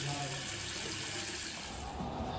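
Bathroom sink tap running in a steady hiss, cutting off suddenly near the end.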